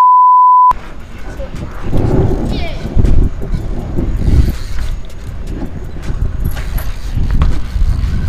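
A single loud 1 kHz censor bleep lasting under a second. Then steady low wind rumble on the microphone as a bicycle is ridden fast across asphalt.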